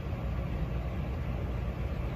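Steady low rumble of background noise in a room, even and unchanging, with no events in it.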